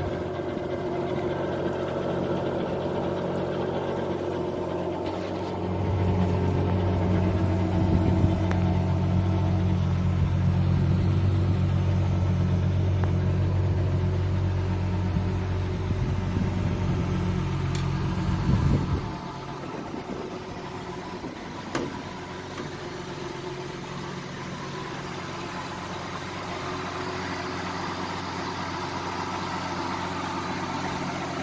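MerCruiser 4.3 V6 sterndrive engine idling steadily, run on a hose for a water test on the trailer. It grows louder a few seconds in, then drops to a softer, even idle about two-thirds of the way through.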